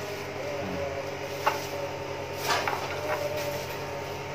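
Metal wire fan guard being handled and its clasp worked, with a sharp click about a second and a half in, a scraping rattle about halfway, and a couple of lighter clicks after it.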